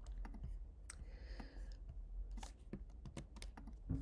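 Typing on a computer keyboard: an irregular run of key clicks, with a louder keystroke near the end.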